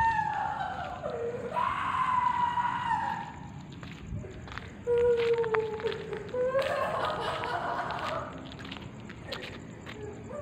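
A series of long, drawn-out wailing cries, each about a second or more, some high and one lower, sliding down or up in pitch, with a few light knocks between them.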